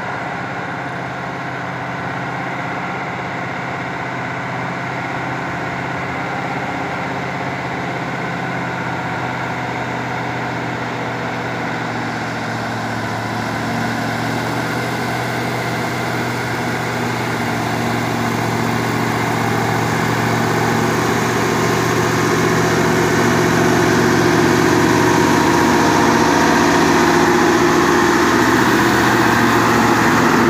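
Diesel engine of a loaded Mitsubishi Fuso dump truck pulling slowly uphill at a steady, unchanging pitch, growing steadily louder as it approaches.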